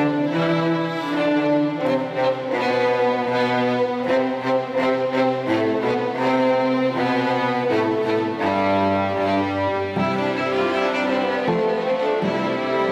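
String orchestra of violins and cellos playing a slow passage of sustained bowed notes that move from chord to chord.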